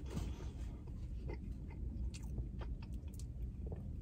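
Faint close-up chewing of a mouthful of burger, with soft scattered mouth clicks over a steady low hum.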